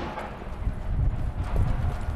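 A pause in the conga playing: irregular low thuds and a few light knocks, with no drum tones ringing.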